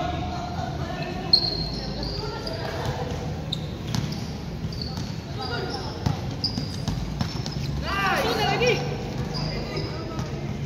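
A basketball being dribbled on an indoor gym court, with short high squeaks and players' voices calling out in a large echoing hall; one louder call comes about eight seconds in.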